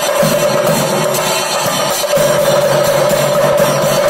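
Ensemble of chenda drums beaten in a fast, dense rhythm for the Thidambu Nritham temple dance, with a steady ringing tone held underneath.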